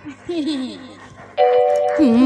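A brief gap in the stage music: over the tail of a fading chord, an amplified voice says a few short syllables, each falling in pitch. About a second and a half in, a steady held two-note instrumental tone starts, leading into the next song.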